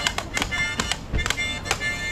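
Harmonica played live: held reedy chords broken by short, sharp attacks several times a second.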